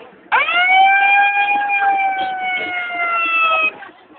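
A long horn blast that swoops up at the onset, then holds one steady pitch, sagging slightly, for about three seconds before cutting off abruptly.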